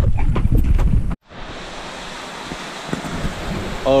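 Wind buffeting the microphone for about the first second, then, after a sudden cut, the steady rush of water pouring from a pump-fed pipe spout into a large fish tank as it refills.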